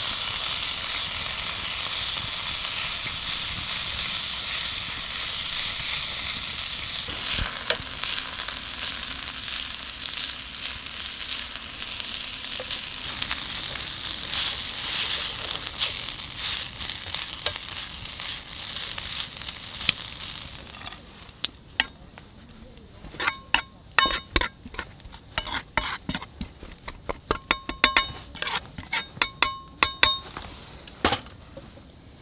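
Noodles and bean sprouts sizzling in a hot wok over a campfire, stirred and tossed with tongs, with small scrapes and ticks against the pan. About two-thirds of the way in the sizzling stops and a quick series of sharp metallic clinks with a ringing note follows as the food is moved out of the pan.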